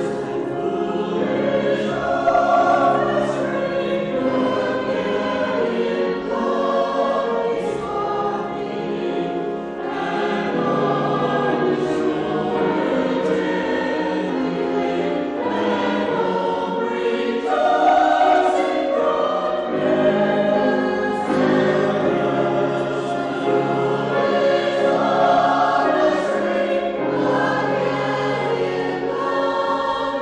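Mixed church choir of men and women singing together.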